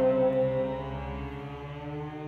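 Small orchestra of strings and winds with solo bassoon, playing long held chords. The loudest sustained note fades about a second in, leaving softer chords.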